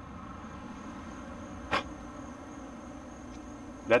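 Steady hiss from a propane weed torch held wide open to simulate a catastrophic leak and trip a GasStop excess-flow shutoff, with one sharp click a little under two seconds in.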